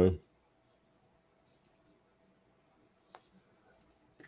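A few faint computer-mouse clicks, scattered and widely spaced, in near silence; the clearest comes just after three seconds.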